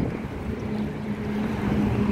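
Steady low engine rumble of a motor vehicle, with a constant hum that grows stronger partway in.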